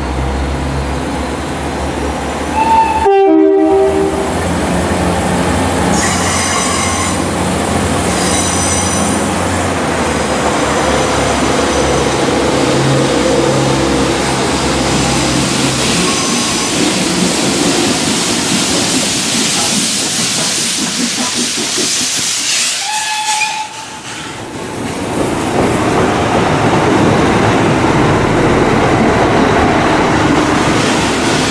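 Northern Ireland Railways diesel multiple unit running through the station on a curve, with a short horn blast about three seconds in and high-pitched squeals around six to nine seconds in; then steady running noise as the train passes close by.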